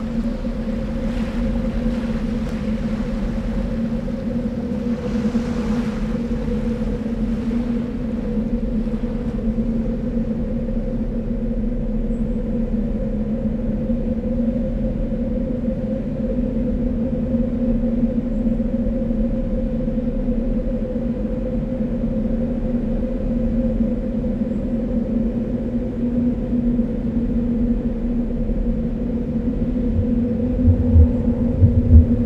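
Ambient drone score of two steady low held tones, with sea waves washing in swells over the first eight seconds or so.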